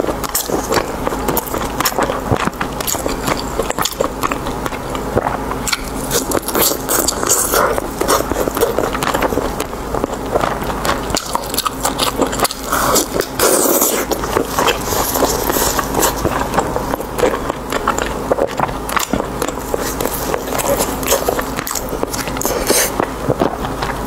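Close-miked mouth sounds of a person biting into and chewing braised pork belly: a dense, steady run of small wet clicks, smacks and crunches.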